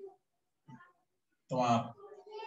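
A man's voice speaking in short, broken fragments, with pauses between them.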